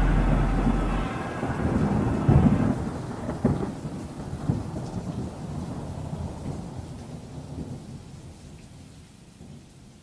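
Thunderstorm sound: rolling thunder with rain, with a sharper clap about two seconds in, fading slowly away. The last chord of the music dies out under it over the first few seconds.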